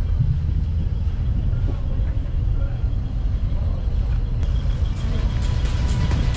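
A low, steady rumble. About four seconds in, upbeat background music cuts in over it.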